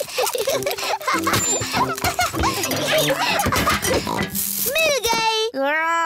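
Cartoon children's voices giggling and playing over background music, with scattered light clatter of toys. From about four seconds in, a voice glides up and down in pitch and then holds a long call.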